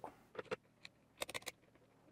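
Faint clicks and light taps of small plastic parts being set into an opened cordless drill-driver's housing: a few scattered clicks, then a quick run of four or five a little past the middle.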